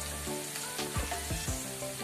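Chopped onions frying in hot oil in a pan, sizzling steadily, under background music with a steady beat.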